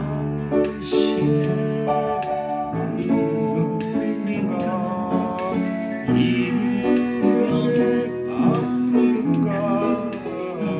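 Music: an upright piano played by ear, a melody over sustained chords, with a sung vocal line mixed in.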